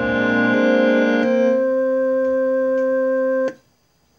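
Electronic keyboard holding a sustained chord that changes to a new chord a little over a second in, the notes held at an even level rather than dying away, then cut off abruptly near the end.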